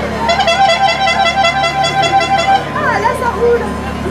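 A horn tooting a rapid run of short notes at one steady pitch for about two seconds, over crowd chatter.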